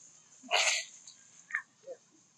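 A single short, harsh sneeze-like snort about half a second in, followed by two brief squeaks near the end, over a steady high-pitched drone.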